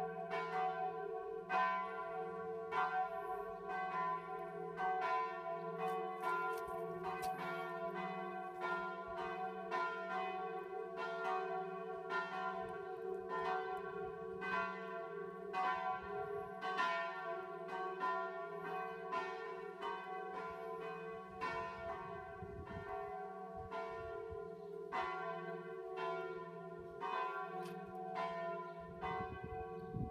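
Church bells ringing: several bells struck one after another at about one or two strikes a second, their tones ringing on and overlapping into a steady hum.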